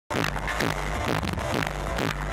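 Loud music with a strong bass, played live through a concert sound system. It cuts in abruptly right at the start.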